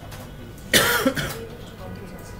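A person coughs once: a sudden loud burst about three quarters of a second in, dying away within about half a second.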